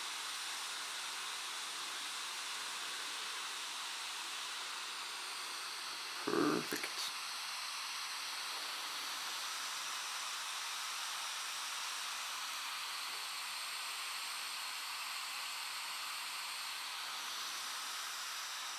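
Steady hiss with no rhythm or change, and a brief vocal murmur about six seconds in.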